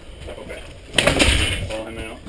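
A wooden back door is unlatched and pulled open: a sharp click about a second in, then a brief scraping swing.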